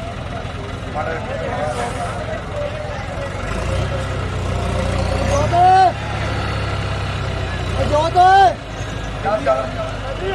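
Tractor engine running, its low rumble swelling about three and a half seconds in, under crowd chatter. Two loud shouts that rise and fall in pitch stand out, one about halfway and one about eight seconds in.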